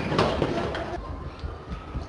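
Indistinct voices of a class of schoolchildren with a background hubbub, fading to a lower, steadier murmur about halfway through.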